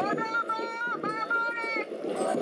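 A raised voice calling out two long, drawn-out syllables, each held for about a second with a slight bend in pitch, over outdoor background noise.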